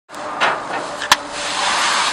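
Raw chicken pieces sizzling on a hot gas grill's grates, the hiss swelling as more pieces go down. Two sharp slaps as pieces are dropped onto the grate, about half a second and a second in, the second the louder.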